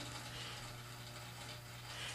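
Faint room tone: a steady low hum under a quiet background hiss, with no distinct event.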